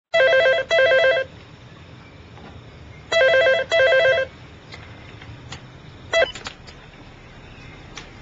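Telephone ringing twice in a double-ring cadence: two short trilling rings close together, a pause of about two seconds, then two more. About six seconds in there is a short clatter of clicks.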